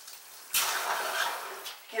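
Breath blown hard through the end of a shower sprayer hose: one sudden rushing gush about half a second in that fades away over about a second, clearing the water left in the hose.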